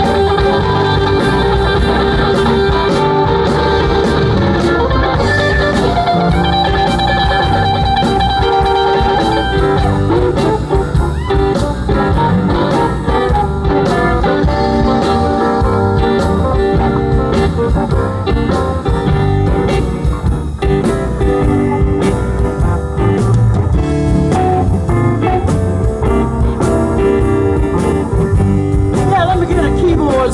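Live electric blues band playing an instrumental passage: electric guitars with held, sustained notes over bass guitar and a steady drum-kit beat.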